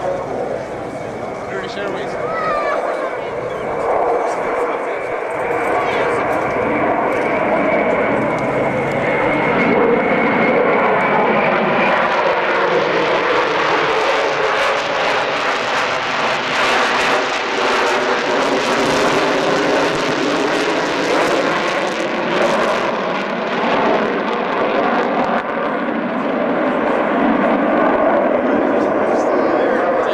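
Concorde's four Olympus turbojet engines on approach: a continuous jet noise with a high whine that slowly falls in pitch. The noise grows louder about ten seconds in and stays loud as the aircraft nears.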